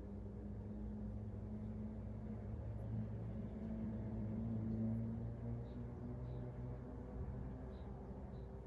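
A low, steady motor hum that swells a little around the middle and then settles back.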